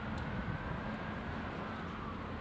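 Steady low outdoor rumble, with a faint high tone that slowly rises and then falls away.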